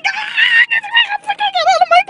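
A person squealing and laughing in high-pitched, wavering bursts, without clear words.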